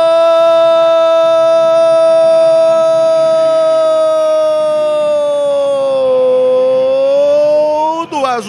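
A football commentator's long drawn-out goal cry: one held vowel at a high pitch that sags about six seconds in and climbs again near the end, marking a goal just scored.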